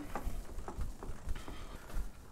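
Faint, scattered knocks and clicks of a heavy crossbow and its bow press being handled while the string is changed, with a slightly louder knock at the very end.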